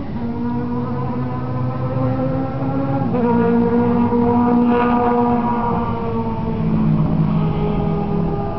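A nearby engine running steadily, its pitch stepping up about three seconds in and easing back down near the end.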